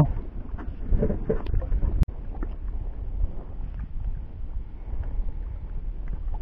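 Wind buffeting the microphone with a steady low rumble on an open small boat at sea, with faint voices about a second in and a single sharp click about two seconds in.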